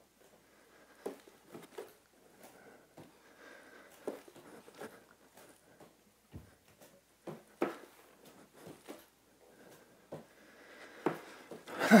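Bare feet and hands landing on a hardwood floor and yoga mat from repeated two-legged handstand jumps: a dozen or so light thuds at irregular intervals, with some breathing between them.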